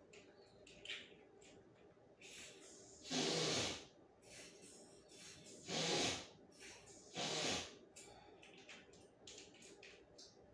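A person sniffing hard through a stuffy nose three times, each sniff about half a second long, drawing in a dose of Afrin nasal spray.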